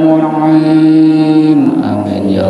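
A man's voice chanting an Arabic prayer into a microphone, holding one long note that drops in pitch and trails off near the end.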